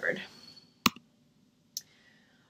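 Two sharp clicks about a second apart, the first louder: a computer click advancing the presentation to the next slide.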